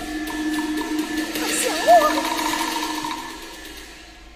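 Teochew opera orchestra accompaniment holding steady sustained notes, with a short sliding note that rises and falls about two seconds in. The music fades away near the end.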